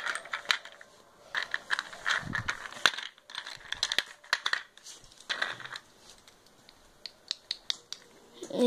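Handling noise: irregular clicks, taps and scraping rustles of objects being moved close to the microphone.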